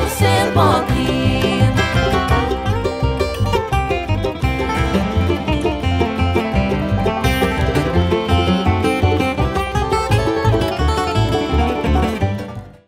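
A bluegrass band plays an instrumental break: a capoed acoustic guitar plays quick picked notes over a steady low beat.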